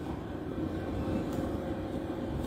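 Low, steady background rumble with no clear events, joined by a faint steady hum about half a second in.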